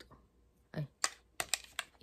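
About five light, sharp clicks and taps in quick succession as an eyeshadow palette and makeup brush are handled, with a short exclamation from a woman just before them.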